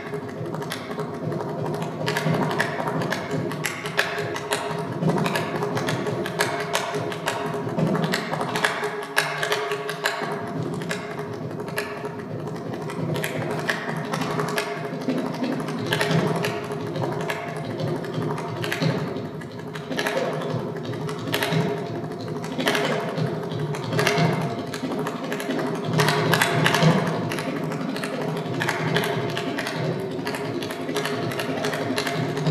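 Mridangam playing a continuous run of fast, intricate strokes over a steady drone.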